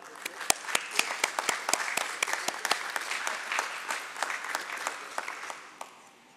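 Applause from a small gathering: separate hand claps that start at once, keep up steadily and die away near the end.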